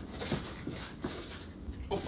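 A few soft knocks and shuffling as a person steps across a workshop floor and slides a large wooden board down from an overhead shelf.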